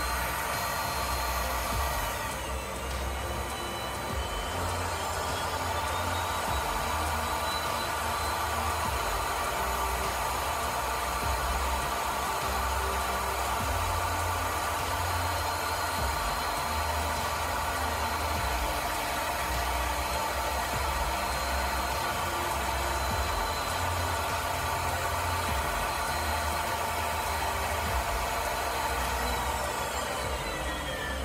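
RIDGID power pipe threading machine running steadily, its electric motor turning the pipe while the die head cuts threads.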